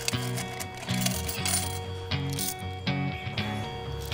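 Quarters clinking against each other and the metal tray of a coin change machine as a hand scoops them out, a few separate clinks over background music.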